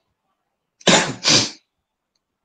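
A person gives two loud, explosive bursts of breath back to back, about a second in, each lasting about a third of a second.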